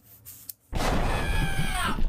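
A man's loud, distorted yell of 'ah' that starts suddenly about two-thirds of a second in and falls in pitch, over a heavy rumble.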